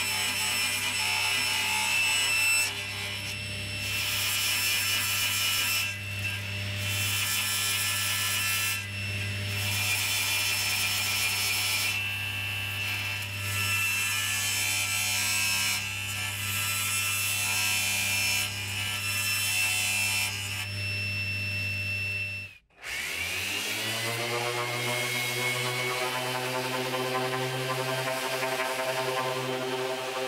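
Table saw running and cutting an epoxy-resin panel in several passes, the cutting noise rising over the saw's steady motor hum in stretches of one to three seconds. After an abrupt break about three-quarters of the way in, a random orbital sander starts up, its pitch climbing for a few seconds before it runs steadily.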